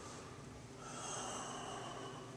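A faint breath, swelling about a second in, over quiet room tone.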